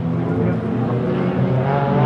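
Engines of a pack of small short-track race cars running together, rising in pitch and loudness toward the end as the field picks up speed.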